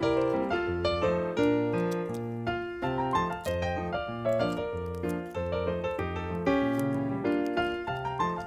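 Background piano music, a continuous run of notes without pauses.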